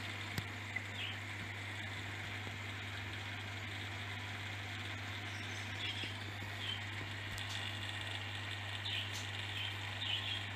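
Steady low hum of aquarium equipment, such as air pumps and filters, with an even wash of running water over it. A few faint, short high chirps come through now and then.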